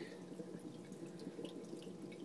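Faint, steady trickle of running water from a fish tank's filter.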